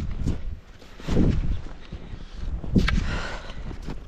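Footsteps plunging through deep snow: three heavy steps, about one every second and a half.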